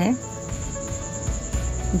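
Crickets chirping: a high, steady, finely pulsing trill, under faint background music.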